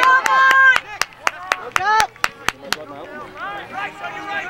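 Hands clapping in a quick steady rhythm, about four claps a second for two and a half seconds, over loud shouting in the first second.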